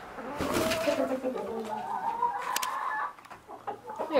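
Domestic chickens clucking in a series of drawn-out calls that fade out about three seconds in.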